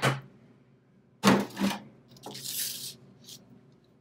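Handling sounds as a cooked breaded chicken fillet is lifted off a foil-lined baking tray onto a paper plate: two sharp knocks a little over a second in, then a brief crinkling rustle.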